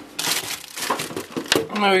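Plastic food packaging crinkling and rustling in quick, irregular crackles as packs of vegetables are handled and pulled off a fridge shelf.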